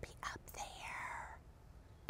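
A woman's voice, faint and whispered, from about half a second to a second and a half in, with a few small mouth clicks before it.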